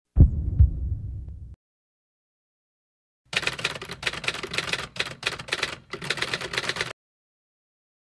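A deep low boom that dies away over about a second and a half, then a pause and about three and a half seconds of rapid typewriter key clicks, a sound effect for on-screen lettering being typed out.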